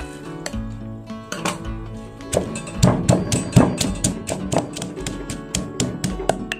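Background music with sustained notes, over which, from about two seconds in, a granite pestle pounds sliced lemongrass in a granite mortar: a quick, regular run of thuds, about four a second.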